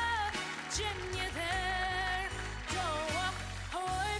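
A boy's solo singing voice holding long, wavering notes and sliding between them, over a pop-ballad backing track with slow-changing bass notes.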